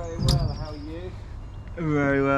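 A man's voice making wordless vocal sounds that rise and fall in pitch, with one sharp knock about a third of a second in.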